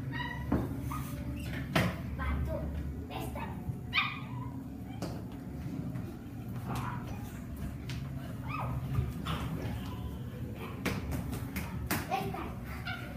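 Children imitating puppies with short high-pitched yelps and whimpers, one sharply rising about four seconds in, over a steady low hum and a few knocks.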